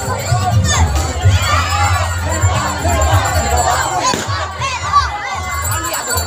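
Crowd of many voices shouting and cheering together, overlapping without pause.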